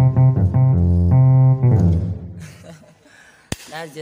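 A reggae bass line played on an electronic keyboard's bass voice. A run of short, deep notes ends in a held note that fades out about two seconds in.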